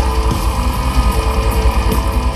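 Live metal band playing loud through an outdoor PA: electric guitars over a rapid bass drum.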